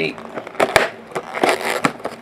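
A cardboard trading-card box being handled and turned in the hands: rustling and rubbing with a few sharp clicks.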